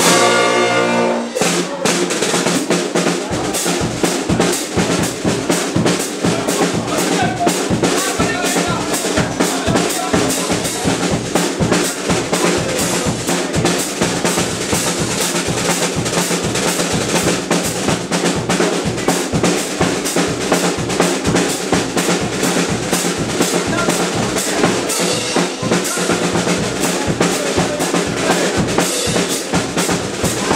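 Dweilorkest brass band playing live. A held brass chord breaks off about a second in, then snare and bass drum take up a steady, driving beat under trumpets, trombones, euphoniums and sousaphones.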